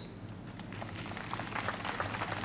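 Audience applauding: scattered claps start about half a second in and grow fuller.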